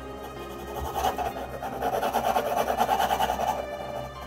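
Graphite pencil scratching across drawing paper in quick sketching strokes, from about a second in until shortly before the end, over soft background music.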